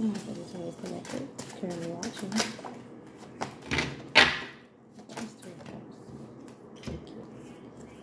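A deck of tarot cards being shuffled by hand: a run of short, sharp card clicks and flicks, with one louder knock about four seconds in, then fainter clicks as the cards are handled.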